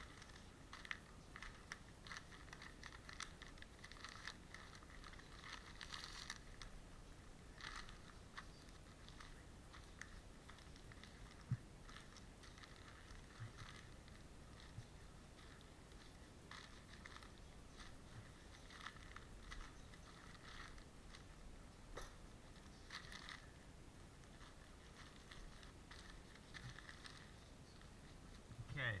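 Faint, scattered crinkling and rustling of newspaper as it is rubbed over a skinned muskrat hide to clean off fat and flesh, with one sharper click near the middle.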